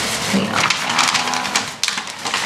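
Plastic wrapping and tissue paper crinkling and rustling close up as a package is handled and unwrapped, with a brief lull near the end.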